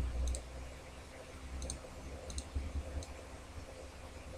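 Computer mouse buttons clicking about four times, each click a quick press and release, over a low steady rumble.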